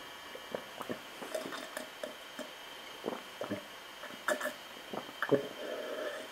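A string of short wet clicks and gulps, like someone drinking and swallowing, with a faint steady hum behind; the sharpest click comes about five seconds in.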